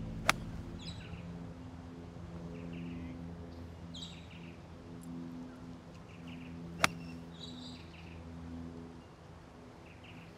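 Two sharp cracks of a golf club striking a ball, one just after the start and one about six and a half seconds later, with birds chirping in between.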